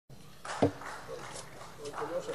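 Indistinct voices, quieter than the speech that follows, with one brief louder sound about half a second in.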